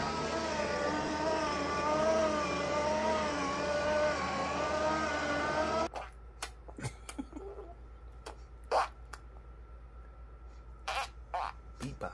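A steady whine that wavers slightly in pitch, from the electric motors of a toddler's spinning ride-on bumper car. It cuts off suddenly about six seconds in, leaving a quiet room with a few soft clicks and taps.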